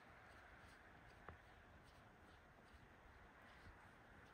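Near silence, with faint crunching footsteps in deep snow at about three a second, and one small click a little over a second in.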